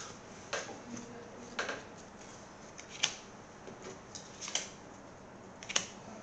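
Trading cards being handled and set down onto piles on a wooden table: a handful of short, soft rustles and taps, the sharpest about three seconds in and just before the end.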